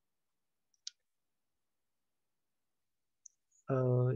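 Dead silence broken by one short, sharp click about a second in and a fainter tick near three seconds, then a man's voice starts just before the end.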